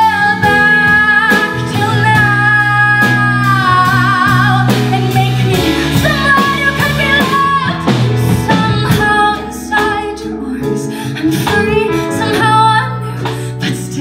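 A woman singing a musical-theatre song live, backed by a band of piano, guitar, bass and drums. She holds long notes with vibrato in the first few seconds, then sings shorter phrases.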